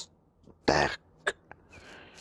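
A man coughs once, briefly, a little under a second in, followed by two short clicks.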